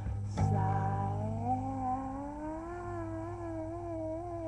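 A man singing one long wordless wail that slides upward in pitch and then wavers, over an acoustic guitar strummed about half a second in.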